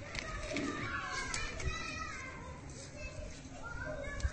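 Children's voices in the background, talking and playing.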